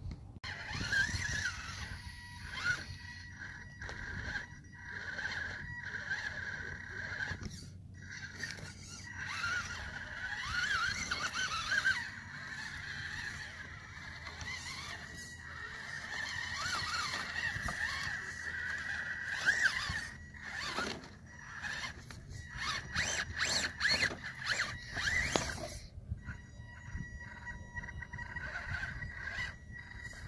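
RC rock crawler's electric motor and gearbox whining, rising and falling in pitch with the throttle as the truck climbs rock. A run of sharp clicks and scrapes comes about twenty seconds in.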